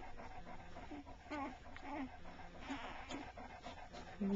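Newborn bullmastiff puppies whimpering and squeaking while they nurse, a few short, faint cries, most of them in the middle.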